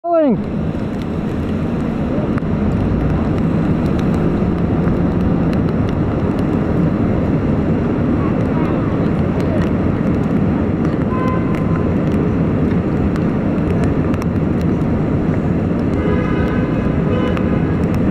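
Busy city street noise: a steady din of traffic and people, with voices of passers-by breaking through briefly near the middle and for a couple of seconds near the end.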